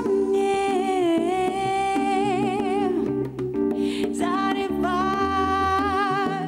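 Live slow jazz: a woman's voice singing long held, wordless notes with a wavering vibrato, over sustained electric keyboard chords and low bass notes.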